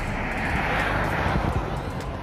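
A road vehicle passes close by, its noise swelling and fading over about a second, above a steady low engine rumble.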